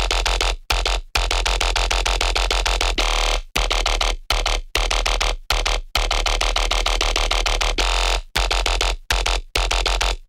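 Dubstep bass section playing back from a DAW: loud, heavily compressed and distorted synth basses over a heavy sub, chopped by short silent gaps at uneven spacing.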